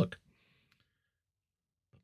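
The end of a spoken word, then near silence, with a few very faint ticks in the first second.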